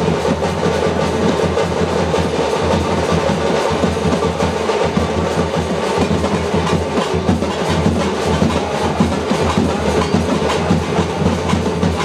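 Loud, fast drumming that goes on without a break, dense sharp strikes over a low, steady drone.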